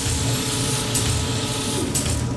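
Transition sound effects under an animation of glowing machinery: a dense, steady hiss over a low rumble, with a few faint brief accents.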